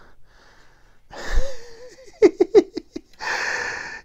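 A man laughing breathily: a short voiced laugh about a second in, a quick run of 'ha' pulses a little after two seconds, then a long wheezy exhale near the end.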